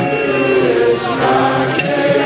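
Kirtan: a group chanting a mantra in sustained, melodic lines. Sharp hand-cymbal strikes ring out at the start and again near the end.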